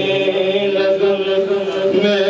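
A man's solo voice singing an Urdu naat into a handheld microphone, holding long, steady notes in a chanted melody.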